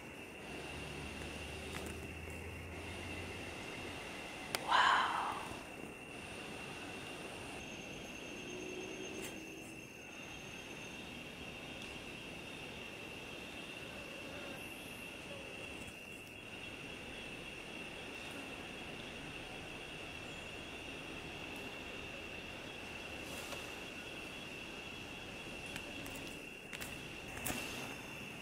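Scarlet macaw giving one short harsh squawk about five seconds in, over a steady high-pitched drone.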